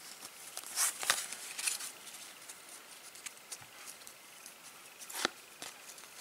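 A stack of trading cards being handled and shuffled through in the hands: light rustling and sliding of card stock, louder rustles about a second in and a sharp click near the end.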